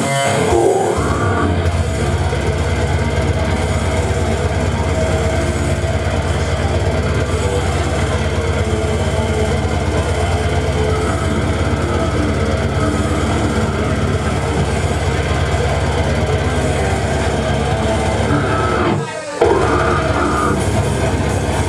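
Live slam death metal played loud: heavily distorted electric guitar over a dense, pounding low end. The music drops out for a split second near the end, then slams back in.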